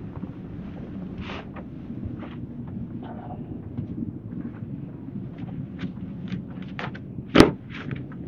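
Footsteps and small knocks as people climb the stairs between decks, over a steady low hum, with one sharp knock about seven seconds in.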